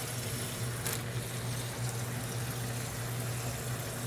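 Kitchen faucet running cold water into a plastic zip-top bag, a steady rush of filling water.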